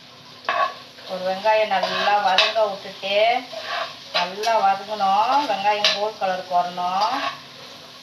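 Metal spatula stirring sliced onions and spices frying in hot oil in a pot: repeated scraping strokes against the pan with a few sharp clinks, over sizzling oil. The stirring starts about a second in.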